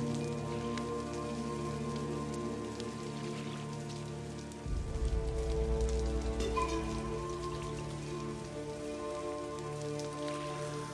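Rain pattering steadily on a river's surface, under held chords of orchestral film score. About halfway through a deep low rumble comes in and continues.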